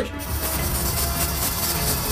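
Aerosol freeze spray hissing steadily from the can, over background music.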